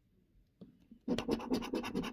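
Coin scratching the coating off a scratch card, a quick run of short rasping strokes that starts about a second in after a near-silent pause.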